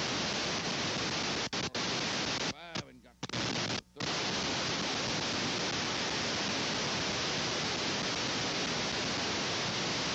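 Steady hiss from an old videotape soundtrack. It cuts out briefly a few times between about one and a half and four seconds in.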